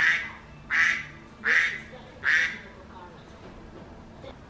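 A phone alert sound going off in a repeating pattern: four short bursts about three-quarters of a second apart, stopping after about two and a half seconds.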